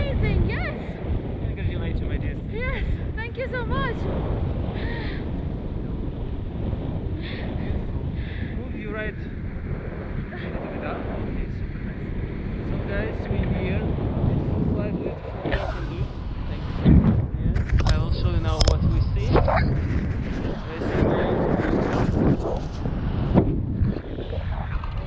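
Rushing air buffeting the camera microphone in flight under a tandem paraglider, a steady low rumble. Brief voices come through near the start and again about two-thirds of the way in.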